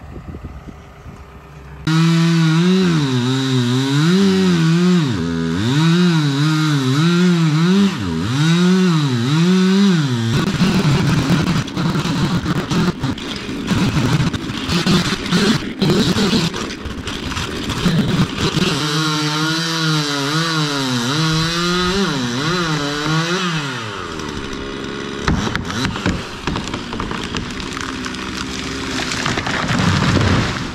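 Two-stroke gas chainsaw felling a large pine. It starts about two seconds in and revs up and down, then cuts into the trunk with a rougher, steadier sound for long stretches. Near the end a heavy crash comes as the tree falls early, with about 8 inches of hinge wood still uncut.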